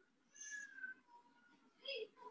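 Faint vocal calls in the background: one with a falling pitch about half a second in, and a short one near the end.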